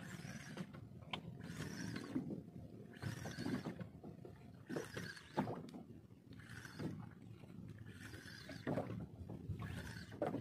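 A spinning reel cranked in short bursts about every second and a half while a hooked fish pulls the rod hard over, over a steady low rumble of water and wind.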